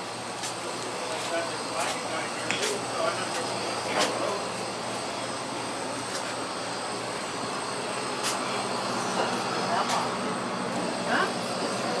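Steady hum and hiss of a small shop's interior, broken by a few light clicks and knocks. Faint voices come in near the end.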